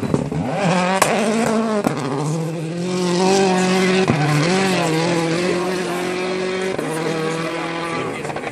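Citroën C4 rally car's engine held at high revs as it drives away along a gravel stage, the pitch breaking briefly for gear changes about two, four and seven seconds in. There are a couple of sharp cracks in the first two seconds.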